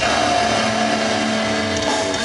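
Live heavy metal played loud through the PA: a distorted electric guitar chord struck and held, ringing out steadily for almost two seconds.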